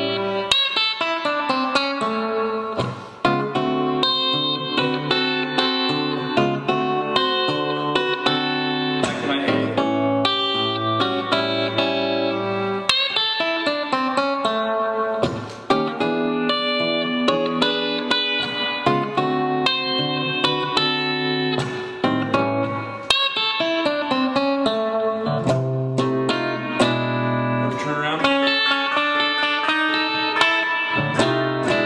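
Gibson archtop electric guitar playing a blues in A, solo: A7 chords with pentatonic riffs worked in, moving through E7 and D7 chords, and closing on a blues turnaround.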